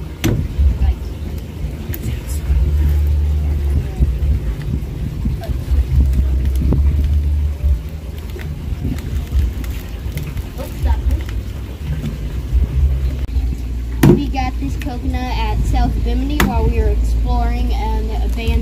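A claw hammer striking a husked coconut: a sharp knock just after the start and two more late, a couple of seconds apart, over a steady low rumble. Voices come in near the end.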